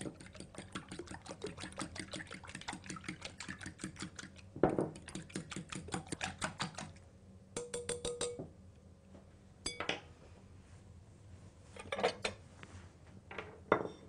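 A hand wire whisk beating eggs, milk, oil and honey in a glass bowl: fast, even ticking of the wires against the glass for about seven seconds. A few separate clinks follow in the second half.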